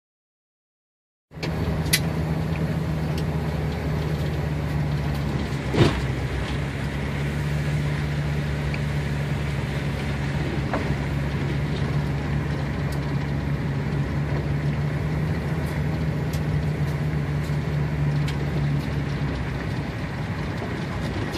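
Vehicle driving on a gravel road, heard from inside the cabin: steady engine and tyre-on-gravel noise that begins abruptly about a second in, with a few short knocks and clicks, the loudest about six seconds in.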